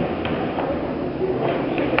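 A neodymium magnet ball rolling down an inclined aluminium channel: a steady rolling noise with a few light knocks.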